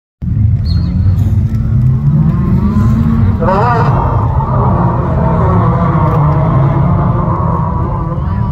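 Autograss racing cars' engines running hard round a grass track, several engines at once over a constant low rumble, with one engine revving up sharply about three and a half seconds in.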